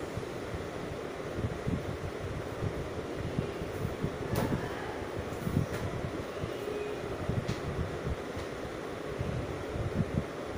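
Steady background room noise, a low rumble and hiss such as a running fan makes, with a few faint clicks.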